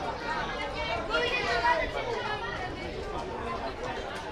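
Indistinct chatter of several voices talking and calling at once, overlapping, with no single clear speaker.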